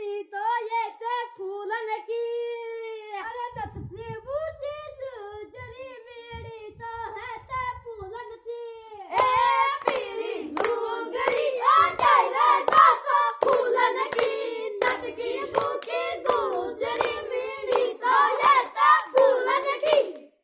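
A child sings a dangal folk song unaccompanied. About nine seconds in, the singing grows louder and rhythmic hand clapping joins it to keep the beat.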